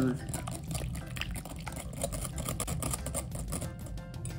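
Wire whisk beating a batter of eggs, milk, melted butter and baking mix in a glass bowl, with rapid, irregular ticking of the wires against the glass.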